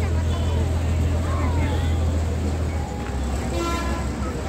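Crane engine running with a steady low drone that eases off about three seconds in, as the platform is swung, with voices around it. A brief horn toot sounds near the end.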